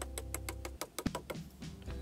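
A quick run of light clicks and taps as a cardstock card is tapped and tilted over a plastic tub to knock excess white embossing powder off the stamped sentiment. The taps come fast at first, then sparser.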